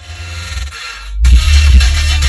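Electronic dance music played loud on a car stereo with a Sony Xplod bass tube subwoofer, heard inside the car. A quieter build-up gives way about a second in to heavy, pounding bass.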